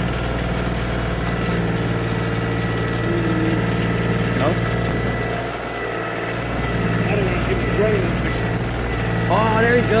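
Kioti CK2510 compact tractor's three-cylinder diesel engine running steadily as the backhoe boom and bucket are worked. Its note dips briefly a little past the middle, then steadies again.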